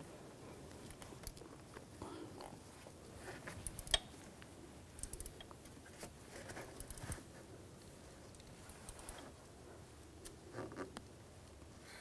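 Faint scattered clicks and light knocks of a hand tool with a T30 bit tightening the retaining screw of a camshaft position sensor, with one sharper click about four seconds in.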